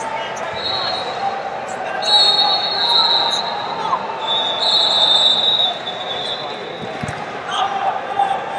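Echoing ambience of a busy wrestling gym: many voices of coaches and spectators, with shrill steady whistle blasts several times, each about a second long.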